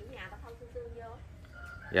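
Rooster crowing: a long call held at a steady pitch for about the first second.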